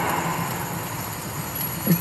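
Steady wash of stadium crowd noise under the quiet backing of a live song, in a gap between sung lines; the singing comes back in at the very end.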